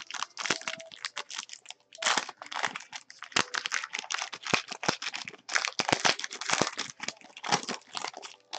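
Shiny plastic trading-card pack wrapper crinkling and crackling in the hands as it is pulled open: a rapid, irregular run of crackles with a short lull about two seconds in.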